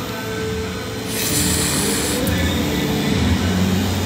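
Rotary pen tattoo machine buzzing steadily as it inks the skin of a forearm. A burst of hiss lasts about a second, starting about a second in.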